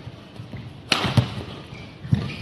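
Badminton rally: a sharp crack of a racket hitting the shuttlecock about a second in, followed a moment later by a dull thud, with a low rumble of footwork on the court around it.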